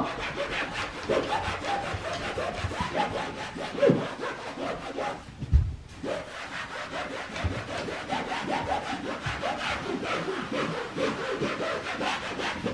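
A wall being scrubbed by hand, a continuous run of quick, rhythmic rubbing strokes. The strokes pause briefly about five seconds in, with a soft thump.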